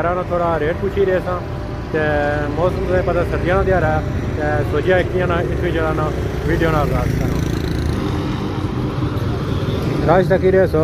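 A man talking over the steady low rumble of street traffic, with motor vehicles and motorcycles passing.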